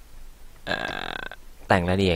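A man's voice making one short, low, croaky sound of under a second, like a burp, followed near the end by ordinary speech.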